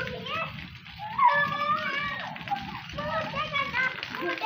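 Girls' high voices laughing and squealing as they play, in broken bursts that slide up and down in pitch, loudest in the second and near the end.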